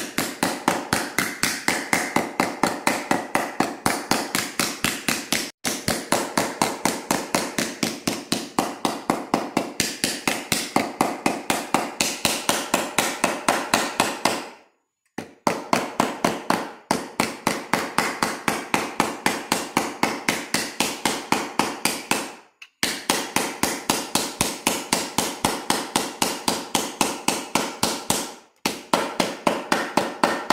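Rapid, even hammer blows, about five a second, on a tinplate cutout laid over a hollow carved in a beech block, sinking the tin into the hollow to give the fruit shape a rounded form. The strikes are sharp with a faint metallic ring, broken by a few short stops, the longest about halfway through.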